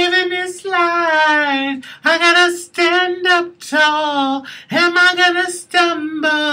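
A woman singing a pop-soul chorus unaccompanied, in several short phrases broken by breaths, with vibrato on the held notes.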